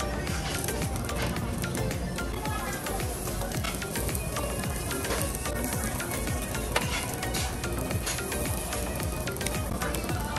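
Background music over the sizzling and bubbling of food cooking in a tabletop hot pot and on a grill, with many small crackles.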